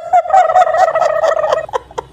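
A woman's long, high-pitched laugh that warbles rapidly in pitch, held for about a second and a half before breaking off.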